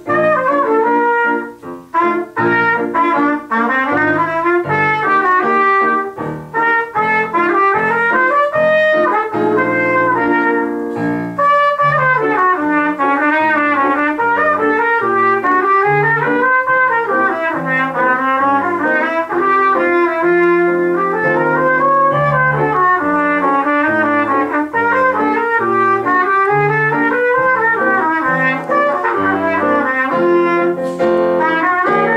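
Trumpet solo: a continuous melodic line of quick notes running up and down, over a piano accompaniment.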